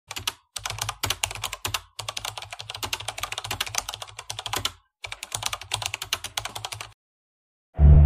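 Computer keyboard typing: quick runs of key clicks broken by short pauses, stopping about seven seconds in.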